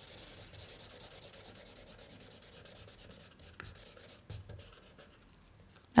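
Felt-tip marker scribbling on paper, fast back-and-forth strokes colouring in a small shape, stopping about five seconds in.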